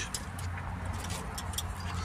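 A steady low machine hum with a few light clicks and taps as the spray-gun hose and nozzle are handled.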